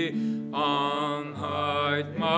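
A man singing slowly into a microphone, holding long notes with a slight vibrato, over a strummed acoustic guitar. A short breath comes just after the start, then a new held phrase begins about half a second in.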